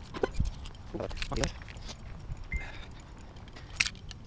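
Keys on a lanyard jangling and clinking while being carried on foot, with a sharper clink near the end as they land on a concrete path.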